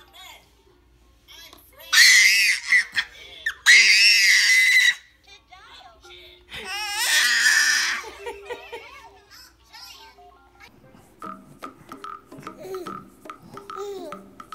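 An infant shrieking in loud, high-pitched bursts, the first running about two to five seconds in and broken once, the second shorter one near the middle, over a simple beeping tune. Softer babbling and music follow near the end.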